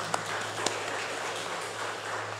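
Light applause from a seated audience, a steady patter of hand claps, with a faint steady electrical hum underneath.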